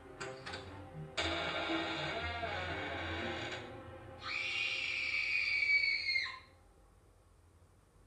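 Horror-film sound clip played back from a coursebook recording: first a drawn-out rough, eerie sound, then from about four seconds in a louder, higher cry that holds for about two seconds and drops in pitch as it breaks off.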